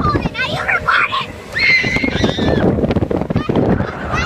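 High-pitched shrieks and squeals from passengers on a speeding motorboat, two bursts in the first two and a half seconds, over steady wind and boat noise.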